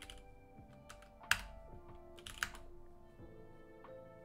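Computer keyboard typing: a scattering of light keystrokes, with two sharper, louder key presses at about one and a quarter and two and a half seconds in, over faint background music.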